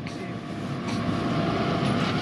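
A vehicle engine running, a steady rumble and hum that grows gradually louder.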